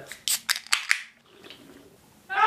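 Two aluminium ring-pull cans of carbonated strawberry Fanta being opened at the same time: several sharp clicks and pops in quick succession over the first second as the tabs are lifted and the seals break.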